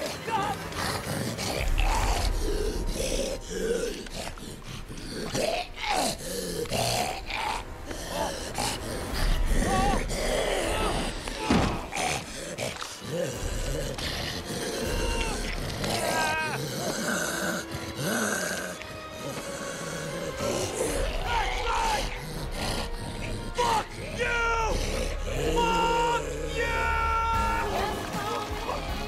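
Horror-film soundtrack of a struggle: grunts and groans from a man fighting off a creature over a tense music score, with many sudden hits. Held musical notes come forward in the second half.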